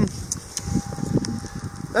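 Wind buffeting the microphone in a snowstorm: an uneven low rumble, with a faint steady hum coming in about a third of the way through.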